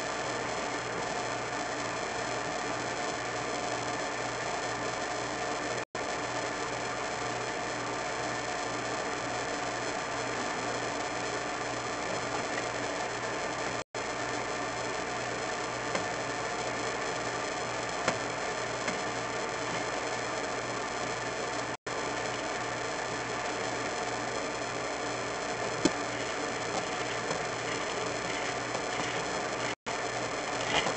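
Steady electrical hiss and hum from a drain inspection camera's recording system, cut by a brief complete dropout about every eight seconds, with a few faint clicks.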